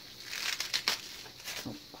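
Raw cabbage leaves crunching and crackling as hands pry and pull the core out of a halved cabbage head, with a few sharp snaps in the first second.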